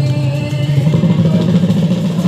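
Live Bhaona ensemble music: a held melody line over a steady, dense, buzzing low accompaniment.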